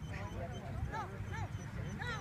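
A dog whining: several short, high calls that rise and fall in pitch, mostly in the middle of the clip, over a low steady rumble.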